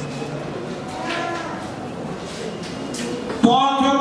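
A man's voice through a microphone and PA system over the hum of a hall. Near the end a loud, drawn-out vowel starts suddenly and is held.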